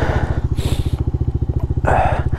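Honda Monkey 125's single-cylinder four-stroke engine idling with a steady, rapid low pulse, just bump-started because the battery is flat. A brief rustle of jacket fabric comes about half a second in.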